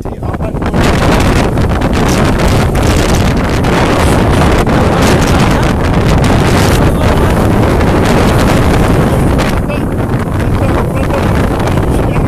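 Strong wind buffeting a phone's microphone: a loud, steady rumbling noise that sets in about a second in.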